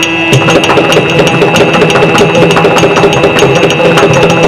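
Yakshagana ensemble music: fast, dense drumming with a steady drone held underneath, and no singing.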